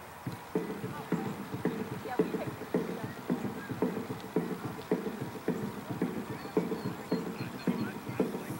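A steady beat of dull, hollow knocks, about two a second, starting about half a second in.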